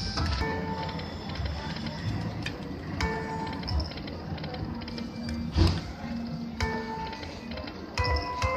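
Lightning Link poker machine playing its electronic tones and jingles as the reels spin and stop. Several sharp clicks are heard, the loudest about halfway through, over a background of gaming-room chatter.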